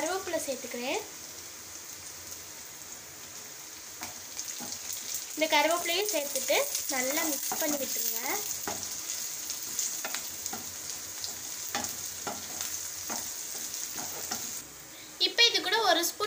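Chopped onions and green chillies sizzling in hot oil in a stainless steel kadai, with a steady hiss and scattered clicks and scrapes as a wooden spatula stirs them against the pan.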